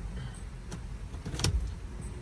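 A 2003 Ford Explorer's engine idling, heard inside the cabin as a steady low rumble. A couple of faint clicks and one louder sharp knock come about one and a half seconds in.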